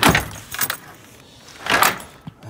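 Jangling and rustling handling noise in two short, loud bursts, one at the start and one about a second and a half later, as the camera is swung around near the tool bag.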